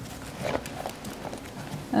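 Quiet room tone with faint, indistinct speech and a few light taps.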